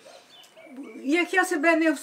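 An elderly woman speaking Ukrainian, starting about half a second in after a brief pause.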